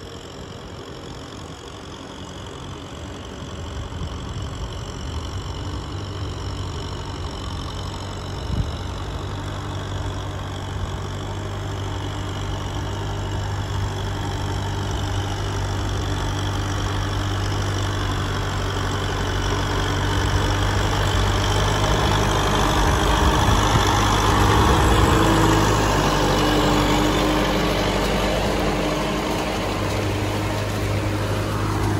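Kubota M6040SU tractor's four-cylinder diesel engine running steadily under load as it pulls a disc plough through a flooded rice paddy. It grows gradually louder as the tractor draws near, loudest about 25 seconds in.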